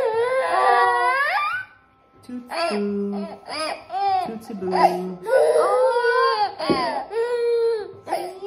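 Baby crying in bouts of wailing cries that rise and fall in pitch, with a short break about two seconds in.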